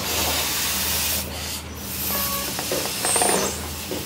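Rushing hiss of air with rubbing and handling of a rubber balloon. The hiss is strongest for about the first second, then comes back in shorter bits.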